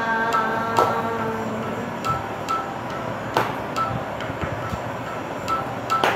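A child sings a Carnatic song in raga Mohanam, holding a sung note near the start before the voice drops away. Through the rest, a soft short ping repeats at an even pace, and three sharp hand claps land a few seconds apart, marking the tala.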